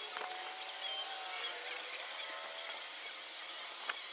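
Outdoor patio background: a steady hiss with a faint, slowly drifting hum, and a few light clicks like tableware being handled.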